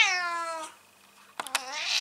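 Domestic tabby cat meowing twice: a drawn-out meow falling in pitch, then after a short pause a second meow that cuts off suddenly.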